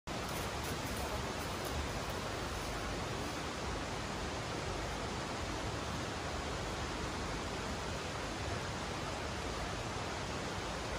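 Steady, even rushing noise with no distinct events in it.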